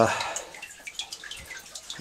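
Water dripping into a shallow meltwater pool on lake ice: faint, irregular small drips and ticks.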